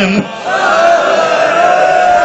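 A zakir's voice through a microphone, holding one long, high chanted note in a mourning recitation. The note begins about half a second in, after a brief break, and rises slightly as it is held.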